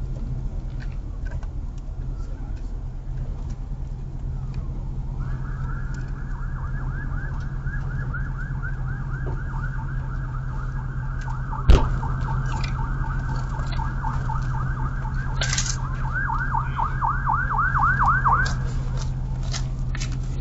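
An emergency vehicle's siren warbling rapidly up and down. It comes in about five seconds in, grows louder with wider, faster sweeps, and cuts off shortly before the end. A single sharp knock lands about halfway through, over a steady low hum.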